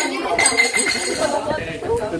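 Cutlery clinking against plates and dishes during a meal, with a brief ringing tone after a strike near the start, over people talking.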